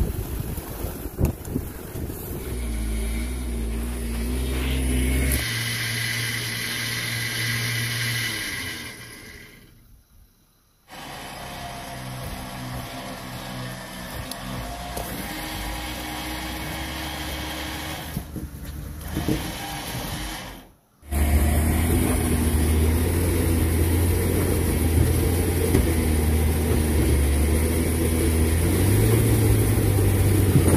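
Jeep Wrangler engines running at low speed while crawling over rocks, in several stretches joined by abrupt cuts; the sound drops out briefly twice, about ten and about twenty-one seconds in.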